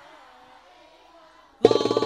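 The faint tail of a devotional sholawat song dies away into a brief near silence. About a second and a half in, the next sholawat track starts abruptly and loudly, with drums and melody together.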